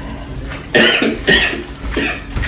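A man coughing twice into his fist, the coughs a little over half a second apart and starting just under a second in.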